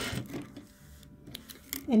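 Sewing machine stitching a quarter-inch seam, cutting off just after the start. A few faint clicks follow before a voice comes in near the end.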